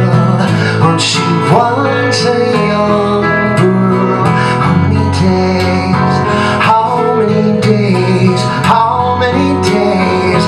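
Live band playing a slow folk song: strummed acoustic guitar with electric guitar and other backing instruments, full and steady throughout.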